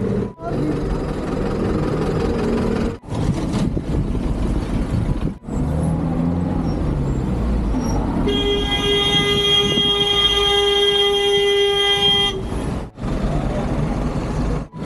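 A vehicle horn sounding one steady, held note for about four seconds, starting about eight seconds in, over the engine and road noise of slow, jammed traffic.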